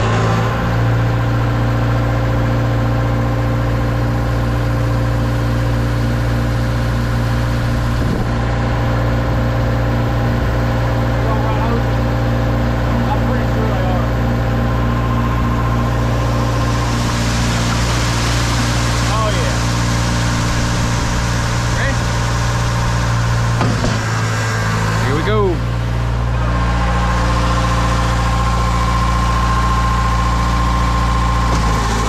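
Diesel engines of a Schwing trailer concrete line pump and a ready-mix mixer truck running, a steady drone. A hiss rises about halfway through, and the low drone dips briefly and comes back a few seconds before the end.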